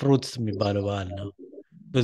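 Speech only: a man's narrating voice, which breaks off briefly shortly before the end.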